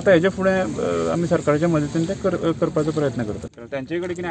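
A man speaking, with a steady hiss behind his voice that drops away about three and a half seconds in.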